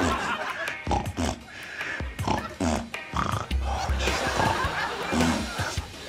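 A man repeatedly snorting through his nose and blowing raspberries with his tongue between his lips, in quick succession, as part of a snort, raspberry, whistle sequence, over background music.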